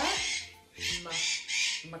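Macaw squawking: two harsh, raspy calls in quick succession in the second half.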